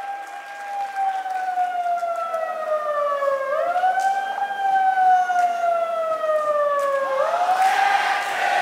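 Siren-like wailing tone, likely a sound effect over the hall's PA, sliding slowly down in pitch and sweeping back up twice. It runs over crowd noise that swells near the end.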